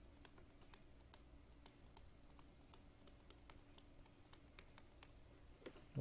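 Faint, irregular clicks and taps of a stylus writing on a tablet screen, about three or four a second, over a low steady hum. A short louder sound comes just before the end.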